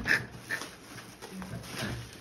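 A dog whimpering softly, after a short laugh right at the start.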